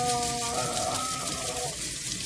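Kitchen tap running onto a soaked fabric hand puppet in a stainless steel sink, water splashing and draining steadily. A drawn-out vocal 'oh' on one steady pitch sounds over the water until near the end.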